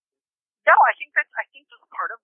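Speech over a telephone line: a voice that sounds thin and narrow, starting about two-thirds of a second in after a brief silence.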